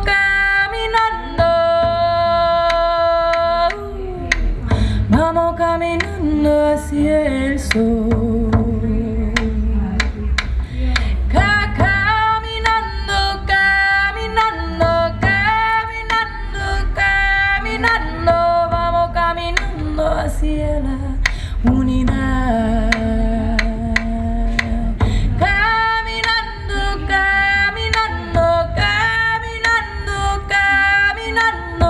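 A woman sings sustained melodic lines, some notes held with vibrato, to her own frame drum beating underneath.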